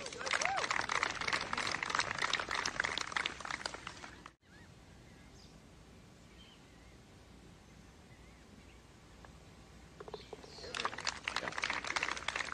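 Golf gallery applauding after a putt for about four seconds. It is followed by a quiet stretch with a few faint bird chirps, and clapping starts again near the end.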